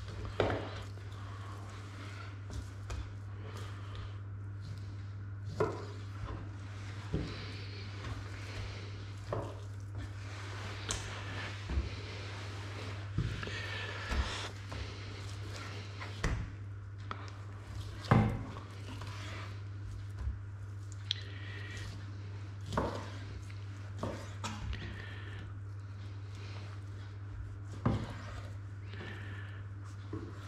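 A boning knife cutting and knocking against a cutting board as pork shoulder meat is trimmed of sinew, with irregular knocks about every second and one louder knock about two-thirds of the way through. A steady low hum runs underneath.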